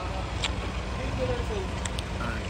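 Steady low rumble with faint voices talking in the background and two light clicks.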